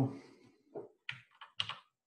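A few keystrokes on a computer keyboard, about four short taps in the second half.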